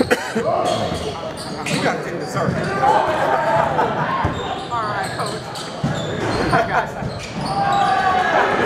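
A basketball bouncing on a hardwood gym floor during play, mixed with indistinct shouting from players and spectators, all echoing in a large hall. A few short squeaks come about five seconds in.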